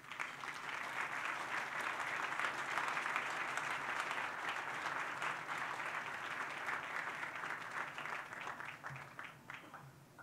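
Audience applauding steadily, the clapping dying away over the last couple of seconds.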